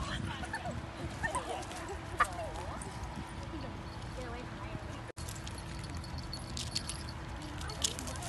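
Outdoor ambience of faint distant voices, with footsteps on wood-chip mulch and a short sharp sound about two seconds in. The sound drops out briefly about five seconds in.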